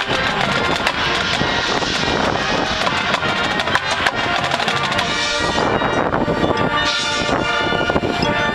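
High school band playing live, winds over drums and percussion. Busy passage with sharp drum and percussion hits for about the first five seconds, then the band settles into held chords.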